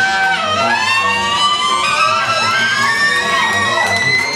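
Small live jazz band playing: a tenor saxophone holds one long high note that slowly rises in pitch, over a plucked upright bass.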